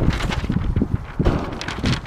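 Paper shooting target crackling and rustling as it is unfolded and handled, with wind rumbling on the microphone; several sharp crackles stand out, the loudest about a second in and near the end.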